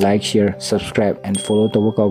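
Speech: a man's voice talking without pause, with a brief high steady tone sounding about one and a half seconds in.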